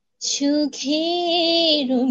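A woman singing a Bengali song unaccompanied: after a brief pause she comes in and holds a long, wavering note.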